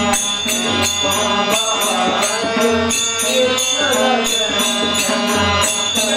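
Devotional bhajan singing by male voices with tabla accompaniment, kept to a steady beat of bright metallic strikes from small hand cymbals, about three a second.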